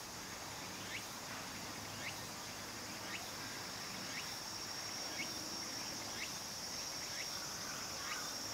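Steady high-pitched insect chorus of singing crickets, with a short rising chirp repeating about once a second.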